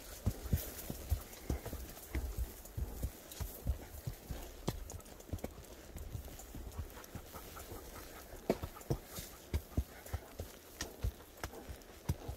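Hoofbeats of a ridden horse walking along a trail: an irregular run of short thuds, several a second.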